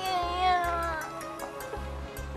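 A woman's long drawn-out crying wail that falls slightly and fades after about a second, over background music with a steady low beat.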